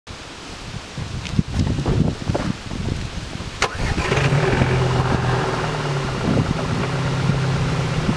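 Gusty rumble of wind on the microphone, then a sharp click a little before halfway, after which an engine starts and runs with a steady low hum.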